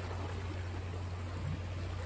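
Steady outdoor background noise at the seashore: an even hiss of wind and water with a constant low rumble underneath.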